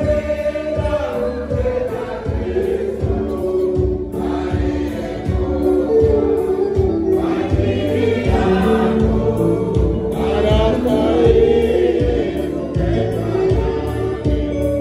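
Mixed church choir of men and women singing a hymn together, with a keyboard accompaniment keeping a steady low beat underneath.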